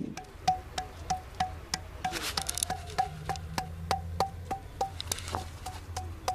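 A fist knocking steadily on a large pink granite stone basin, about three knocks a second, each knock ringing briefly with a clear tone at the same pitch.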